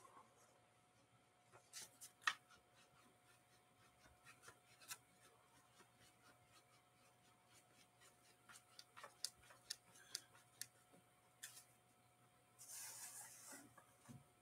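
Near silence with faint, scattered clicks and taps, and a short rustling hiss near the end.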